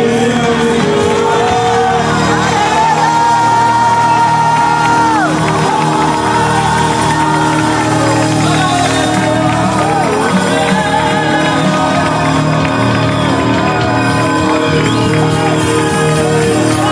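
Live Romani gospel worship song: several men singing into microphones over an electric keyboard, with one long held note about three seconds in that drops away at the end, and the congregation clapping and calling out.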